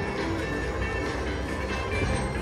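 Slot machine playing its electronic bonus music and reel-spin sounds as the reels spin during a free-spins round.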